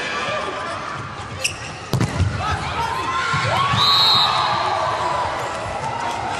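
Volleyball rally sounds: a sharp hit of the ball about two seconds in, followed by a few thuds, then shouting from players and crowd that is loudest around four seconds, with a short high whistle there.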